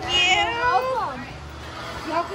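A person's high voice calling out in a long gliding, sing-song tone without clear words, dying away a little over a second in.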